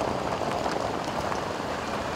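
Road traffic on an unpaved gravel road: cars and a van driving past, making a steady noise of engines and tyres on gravel.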